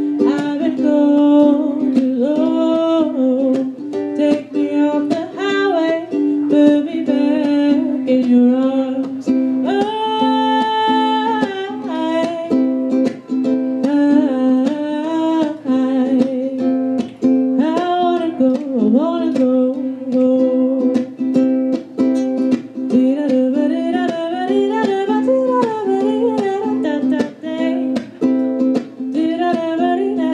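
A woman singing live, accompanying herself on a strummed ukulele.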